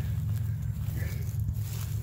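Steady low rumble of wind on a phone's microphone outdoors, with a few faint clicks and rustles as the phone is turned around.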